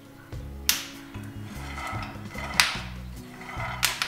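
Raw peanuts dry-roasting in a pan give three sharp pops, under a second in, past the middle and just before the end: the crackling that shows they are still roasting. Steady background music plays underneath.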